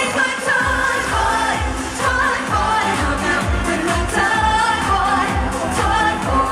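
Live pop song over a concert PA: a woman singing lead into a microphone over an up-tempo dance backing with a kick drum about twice a second.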